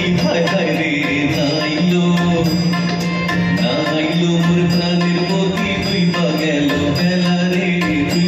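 Live folk music from a small ensemble: drums keep a steady beat over a sustained drone while a melody line bends and glides above it.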